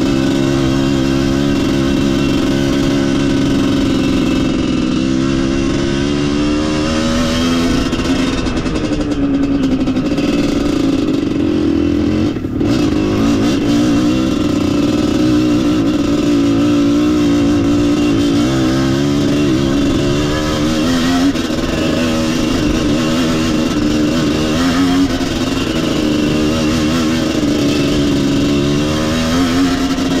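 Yamaha DT125 two-stroke single-cylinder dirt bike engine running under way, its pitch rising and falling with the throttle, with a brief dip about twelve seconds in.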